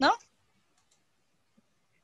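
A voice says a short "No?", then near silence with one faint click about one and a half seconds in.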